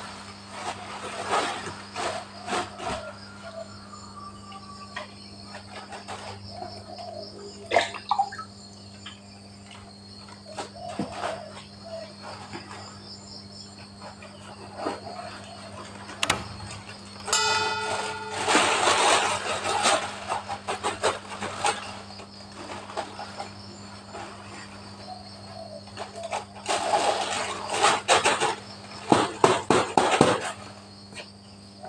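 Plastic bags rustling and crinkling in bursts, with scattered knocks and clicks, as bags of powdered fertilizer are handled; the loudest rustling comes past the middle and again near the end. Insects chirp steadily throughout over a low steady hum.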